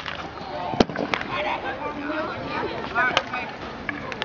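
Sharp knocks of field hockey ball impacts, the loudest just under a second in and another a little after three seconds, over children's voices.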